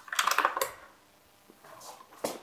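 A short rattle of light clicks and knocks, then a faint rustle near the end: a plastic paint bucket with a wire handle being handled and lifted.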